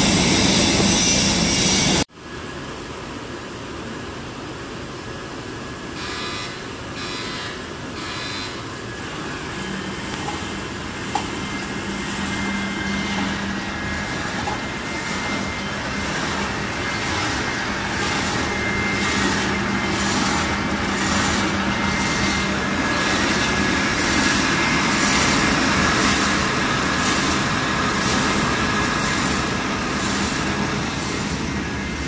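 Automatic shrink-wrap packaging machine for garbage-bag rolls running: a steady mechanical drone with a low hum, and from about halfway a regular high pulse about once a second as it cycles. The first two seconds are a louder rushing noise that cuts off suddenly.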